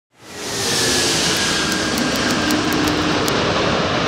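Four-engine jet airliner on landing approach passing close by: a loud, steady jet roar that fades in over the first half second, with a high whine slowly falling in pitch.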